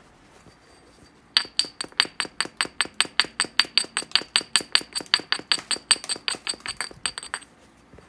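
Obsidian biface edge being abraded with a small hammerstone: a fast, even run of sharp glassy scrapes with a high ringing tone, about seven a second. It starts about a second and a half in and lasts about six seconds.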